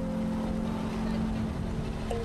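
Background music: low, sustained synthesizer-like notes that change pitch in steps, over a low rumble.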